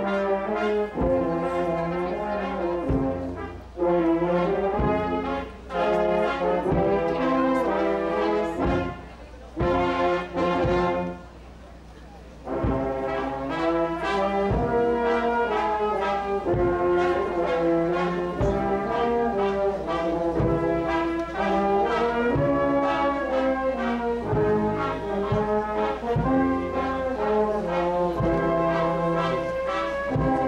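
Brass band playing a slow march, with a bass drum beat about once a second. There is a short break about eleven seconds in.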